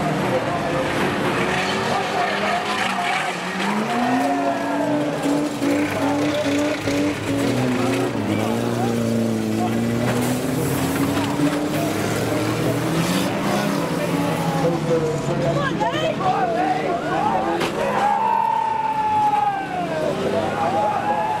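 3-litre banger racing cars running on the track, several engines revving up and down over one another. Near the end a high-pitched whine rises out of the mix and falls away.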